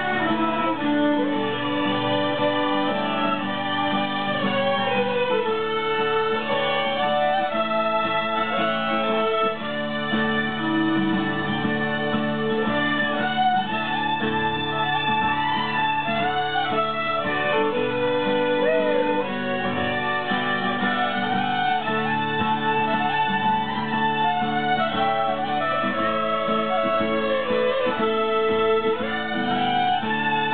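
A group of young fiddlers playing a fiddle tune together in unison, picked up through microphones on stage.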